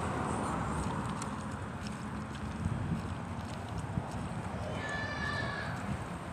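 A car driving past close by, its tyre and engine noise easing over the first couple of seconds, with faint footsteps on pavement. A short high-pitched call sounds about five seconds in.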